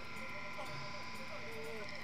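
Faint, wavering voices of the anime's dialogue playing in the background, over a steady faint high tone.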